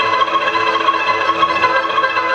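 Live folk ensemble playing an instrumental tune: violin leading over cimbalom, accordion and double bass. The struck strings of the cimbalom stand out.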